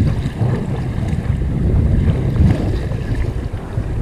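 Wind buffeting the microphone in a steady low rumble, with choppy water sloshing and lapping close around a person wading.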